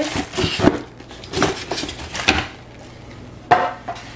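Several short knocks and clatters, with rustling, from a cardboard box and its plastic-wrapped parts being handled while a small ice cream maker is unpacked; a sharper knock comes near the end.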